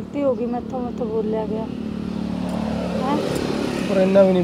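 A person speaks for the first second and a half, then a motor vehicle engine's noise swells and fades over a steady low hum.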